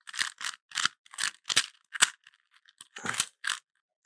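Plastic Rubik's Cube layers being twisted by hand in quick succession: a run of about nine short clacking, rasping turns, irregularly spaced.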